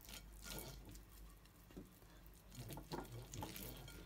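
Faint, irregular soft strokes and light ticks of a silicone pastry brush spreading softened butter over a glass casserole dish.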